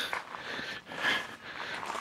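Quiet footsteps on a gravel drive, a few soft irregular steps.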